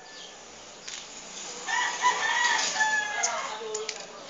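A rooster crowing once, a drawn-out call of about two seconds starting before the middle and ending on a lower, falling note.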